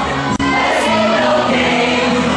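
A stage cast of men and women singing together in chorus, a musical-theatre protest number.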